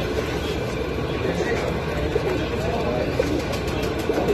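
Caged domestic fancy pigeons cooing, several low wavering calls, over a steady background of voices and low rumbling noise.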